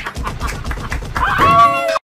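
Hard laughter in quick bursts, rising into a held high-pitched squeal of under a second that cuts off suddenly.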